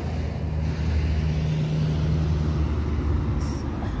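Street traffic: a passing vehicle's engine hum, steady and low, loudest in the middle and easing off near the end.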